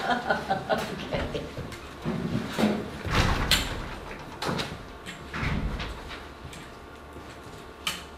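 Chairs shifting and things being handled as people get up from a meeting table: a few short scrapes and knocks, the loudest in the middle, dying down to room noise, with one sharp click near the end.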